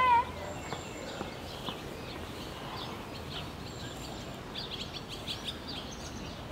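Steady outdoor background noise with small birds chirping, a quick run of high chirps about a second before the end. A brief, loud, high wavering call opens it.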